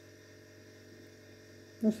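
Faint steady electrical hum over quiet room tone; a woman's voice starts right at the end.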